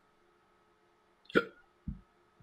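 Near-quiet room tone on a voice call, broken about one and a half seconds in by a short clipped "yeah" and then a brief low thump.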